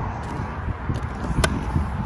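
A rear storage hatch on a fibreglass boat deck being lifted open, with one sharp click about one and a half seconds in, over a steady low rumble.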